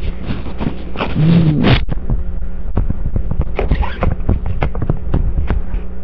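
Handling noise: irregular knocks, bumps and rustling as a man moves about and reaches for a hand puppet, over a steady low electrical hum.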